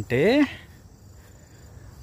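Crickets trilling steadily in the background, a faint high-pitched drone, heard clearly once a spoken word ends about half a second in.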